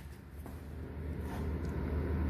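A low steady hum, with faint rustling handling noise as the phone is lowered under the car.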